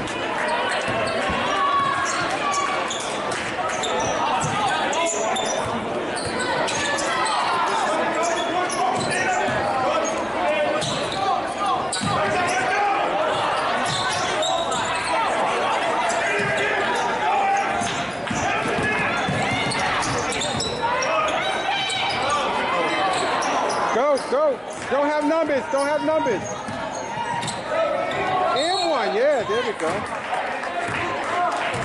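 A basketball game in a large gym: a ball dribbling and bouncing on the hardwood court while spectators chatter and call out. Several short squeaks, rising and falling in pitch, come near the end, typical of sneakers on the floor.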